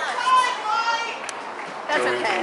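Indistinct chatter and calls from several voices, with no clear words.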